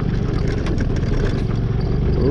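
Small motor scooter engine running steadily while riding over a loose gravel-and-stone trail, with scattered short knocks from the rough surface.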